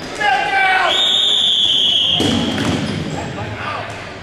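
A short shout, then a long, steady whistle blast starting a dodgeball round. Players' feet pound and scuff on the hardwood gym floor and balls thud as they rush the centre line.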